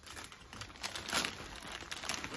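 Plastic snack bag of popcorn crinkling irregularly as it is handled and waved about.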